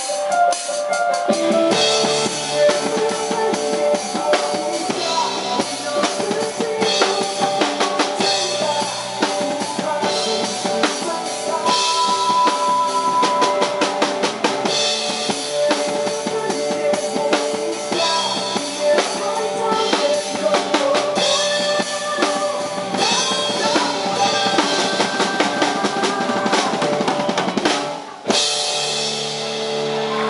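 Acoustic drum kit played along with a song's music: snare, bass drum and cymbal strikes over pitched backing music. A brief break in the playing comes a couple of seconds before the end.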